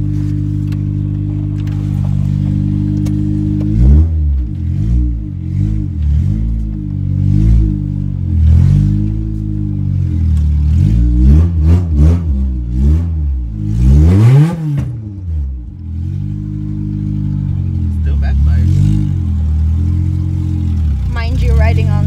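1994 Acura Integra's B20B four-cylinder engine idling steadily, then revved over and over from about four seconds in, the revs climbing and dropping in a string of blips with one higher rev midway. Heard from inside the cabin; the car's headers are cracked.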